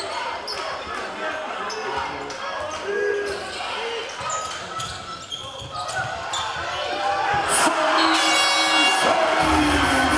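Live sound of an indoor handball match in a large sports hall: the ball bouncing on the court floor and players' and spectators' voices echoing. The crowd noise swells into cheering for the last few seconds, with a shrill whistle-like tone about eight seconds in.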